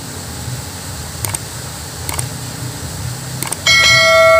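Low steady rumble of road traffic with a few faint clicks. Near the end a loud bright bell chime rings out: the notification-bell sound effect of a subscribe animation.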